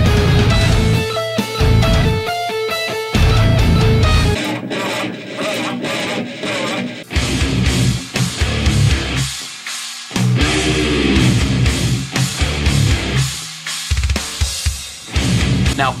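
Heavy metal music: fast distorted electric guitar runs over heavy bass and drums for about the first four seconds, then a busier stretch of guitar with a voice among it.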